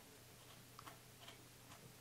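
Near silence with a few faint, irregular clicks from a camera's memory card slot as a card is pressed down and handled in it; the slot's latch no longer holds the card down.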